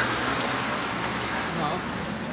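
Steady city street background noise: a low, even hum of road traffic.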